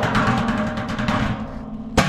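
Thin stainless steel washing-machine drum rumbling and resonating as a hand rubs and pats its dimpled side, opening and closing with a sharp metallic knock.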